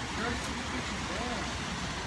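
Steady background rush of distant road traffic, with faint voices in the background.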